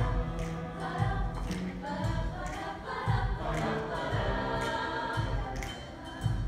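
Mixed show choir singing in harmony over instrumental accompaniment with a steady beat of about two strokes a second.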